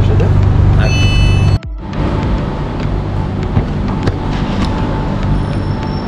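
Airport Rail Link train running, a deep steady rumble inside the carriage, with a high electronic tone sounding briefly about a second in. The rumble then cuts off abruptly, giving way to the quieter steady hum of a station platform with faint voices.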